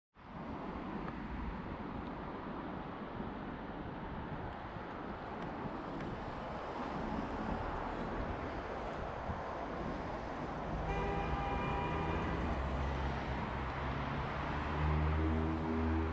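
Road traffic passing steadily on a main road, with a vehicle engine growing louder near the end.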